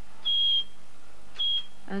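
Home kidney dialysis machine's safety alarm sounding two short high-pitched beeps about a second apart as the alarms are tested.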